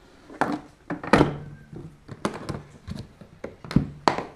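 Hard plastic carrying case being closed: the lid comes down with a thunk about a second in, followed by several sharper knocks and clicks as the case is pressed shut and handled.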